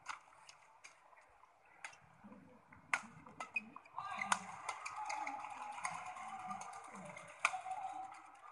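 Badminton rally: sharp, irregularly spaced racket strikes on the shuttlecock. From about four seconds in, a louder din of arena crowd voices rises under them.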